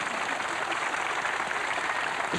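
Theatre audience applauding: dense, steady clapping from a large crowd.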